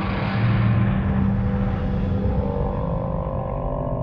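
A sudden low boom that fades slowly into a rumbling, ominous drone with a faint wavering tone, a dramatic sound effect laid over the replayed footage.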